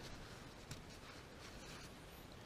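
Faint rubbing of a cloth shop towel being worked between the hands, with one light click about two-thirds of a second in.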